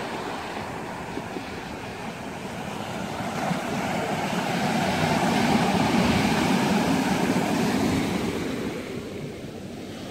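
Surf breaking and washing up over a pebble beach, with the rattle of stones dragged back by the wave's backwash. The wash swells through the middle and fades near the end.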